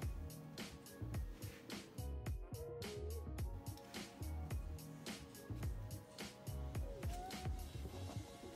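Background music with a steady drum beat and bass line.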